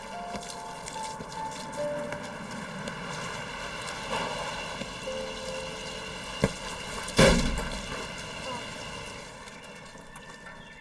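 Children's voices at play, then a sharp kick of a soccer ball about six and a half seconds in, followed a moment later by a loud crash as the ball strikes the side mirror of a pickup truck.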